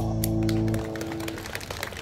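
Live dance band with electric guitars, drums and keyboard ending a song: the final chord rings and drops away under a second in. Scattered claps follow.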